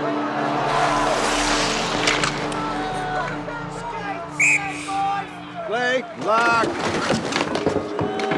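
Mixed film soundtrack of an ice hockey game. Held music notes run under arena crowd noise, with a short high tone about four seconds in. A loud shouted voice rises and falls in pitch about six seconds in.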